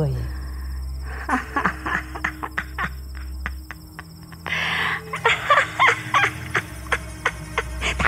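Crickets chirring steadily under a low, sustained drone, with irregular runs of short, sharp sounds about a second in and again past the middle, and a brief breathy burst between them.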